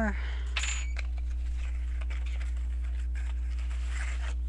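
Hands handling a cardboard blaster box and foil card packs: a brief rustle with a faint high clink about half a second in, then faint light handling noises, over a steady low electrical hum.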